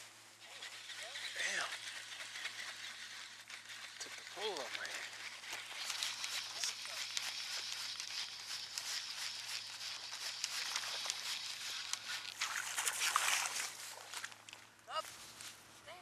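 Faint voices a few times, over a steady rushing hiss of wind across open shoreline water that swells loudest about three-quarters of the way through.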